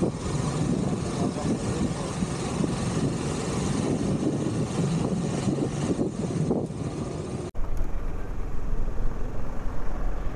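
Moving-vehicle travel noise: rushing, buffeting wind and road noise on the microphone. About seven and a half seconds in it cuts off abruptly and gives way to a duller, steadier low rumble.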